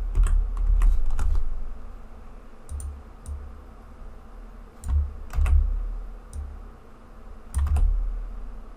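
Computer keyboard keys clicking in four short clusters of a few keystrokes each, with a dull low thud under each cluster, as a line of code is copied and pasted.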